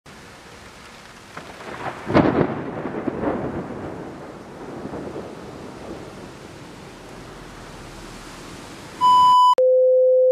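Thunderstorm: steady rain with a loud thunderclap about two seconds in that rumbles away over the next few seconds. Near the end, loud electronic beeps begin: a high tone, then a lower one.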